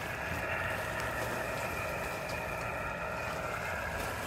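Steady hiss of receiver band noise from a Yaesu FT-857D transceiver's speaker, with no station coming through.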